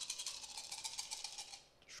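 Thirteen six-sided dice shaken together in cupped hands before a roll: a quick, continuous clicking rattle that stops shortly before the end.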